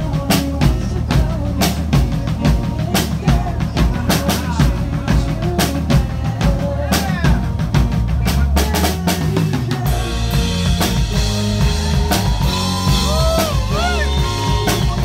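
A live band playing, led by a drum kit: kick drum, snare and cymbals keep a steady beat over a low bass line. About ten seconds in, the music grows fuller, with higher notes sliding in pitch.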